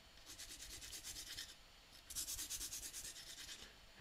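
Pencil lead rubbed quickly back and forth on a sandpaper sharpening pad: a faint, fine scratching in two spells of rapid strokes, each about a second and a half long, with a short pause between.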